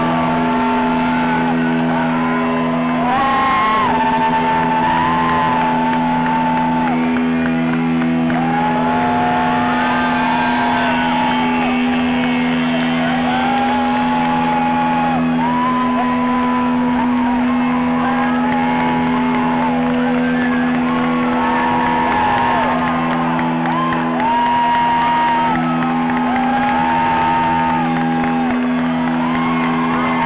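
Live rock band playing in a large hall: steady low held chords with a sung melody over them, and shouts and whoops from the crowd.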